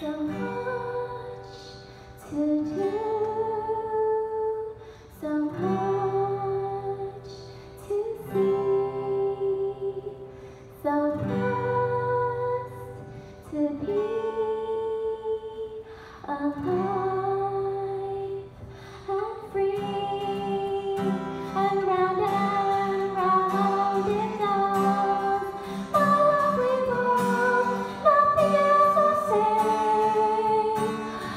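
A woman singing live over a strummed acoustic guitar, in phrases of long held notes with short breaks between them, the singing becoming more continuous in the second half.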